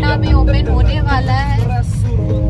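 Background music: a vocal track with held instrumental notes over a heavy bass line.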